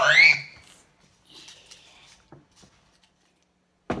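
A child's voice rising steeply in pitch into a squeal at the start, then a quiet stretch, then a single sharp slap on skin near the end.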